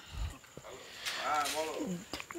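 A faint, drawn-out vocal sound a little past halfway through, rising and then falling in pitch for well under a second.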